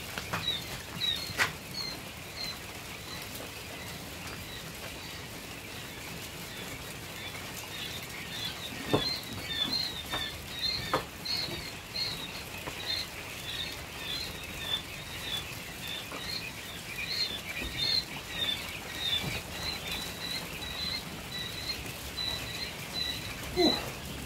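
A crowd of young quail chicks peeping in heated brooder boxes: a continuous chorus of short, high chirps. A few sharp knocks sound early on and around the middle.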